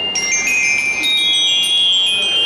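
High, bell-like ringing tones, several overlapping at different pitches and changing every half second or so, like chimes or a glockenspiel.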